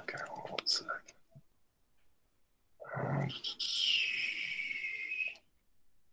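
A spoken "OK" and a short voice about three seconds in, followed by a high-pitched squeak of about two seconds that falls slightly in pitch and then stops.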